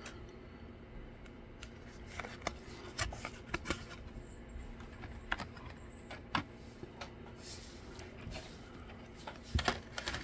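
Light handling noise: scattered soft clicks and taps as a cardboard collector card and its packaging are moved about in the hands.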